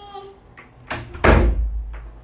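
A single heavy thump about a second and a quarter in, with a deep boom dying away over half a second; a short click comes just before it.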